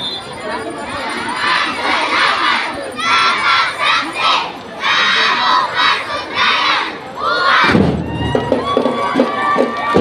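Many children's voices shouting together in short chanted phrases with brief gaps, like a group yell. Near the end, the school drum and lyre band suddenly strikes up with drums and ringing lyre notes.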